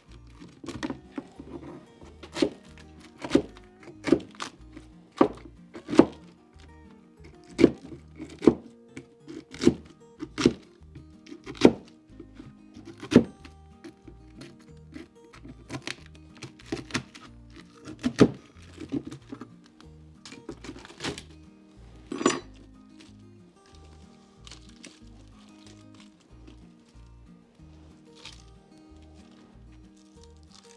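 Background music with a steady beat, over a run of sharp wooden knocks and thunks as old brood comb is cut and knocked out of a wooden beehive frame; the knocks come irregularly, roughly one a second, and stop about three quarters of the way through.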